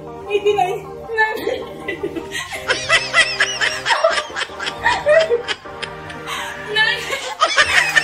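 A woman laughing hard, in bursts about three seconds in and again near the end, over background music.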